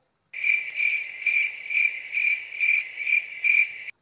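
Cricket chirping, a high chirp pulsing about two and a half times a second. It starts and stops abruptly, as the 'crickets' awkward-silence sound effect used in meme edits.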